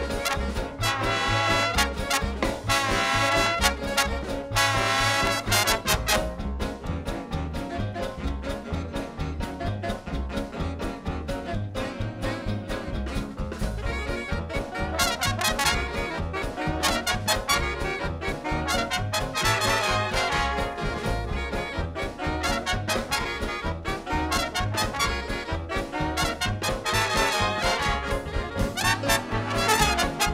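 A swing-era big band plays a fast number live, with trumpets, trombones and saxophones over a steady beat from double bass and drums. The full brass section plays loudly at the start, thins out about six seconds in, and comes back in loud riffs around fifteen and twenty seconds in and again near the end.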